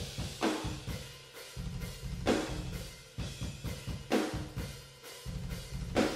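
Room microphones of the GetGood Drums Invasion sampled metal drum kit, soloed, playing a fast beat with a rapid kick drum and accented crash hits about every two seconds. With the bus compressor and stereo spread switched off, the hits are quick and dry with no sustain: more snare coming through and a lot less kick and cymbals, which the mixer calls plastic or cardboardy.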